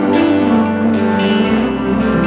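Live band playing an instrumental passage, with a semi-hollow-body electric guitar carrying held notes over a steady bass line.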